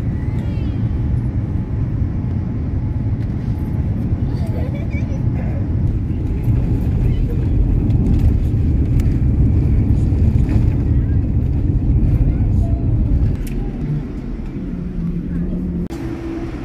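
Jet airliner heard from inside the cabin during landing: a loud, steady low rumble of engines and rushing air that swells for a few seconds on the runway, then falls away suddenly after about thirteen seconds to a quieter hum.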